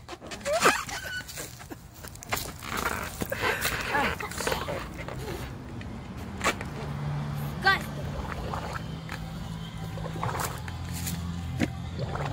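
Breaths blown into a giant water balloon held overhead, with short vocal sounds from the children; a low steady hum comes in about halfway through.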